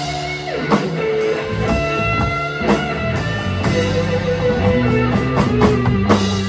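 Instrumental rock-fusion played by a three-piece band: an electric guitar holds a sustained lead melody over an electric bass line and drum kit. There is a run of quick drum hits near the end.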